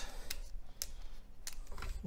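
Light handling noise from a plastic dash camera being turned over in the hands, with about four short sharp clicks spread across two seconds.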